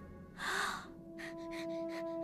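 A short, sharp gasp about half a second in. Then background score begins: long held notes over a light, evenly repeated pulse.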